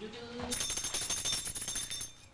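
Rapid metallic jingling with high ringing tones, starting about half a second in and lasting about a second and a half.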